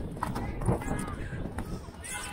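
A pony galloping, its hooves beating on turf, with a steady rumble of wind on a camera mounted on the rider.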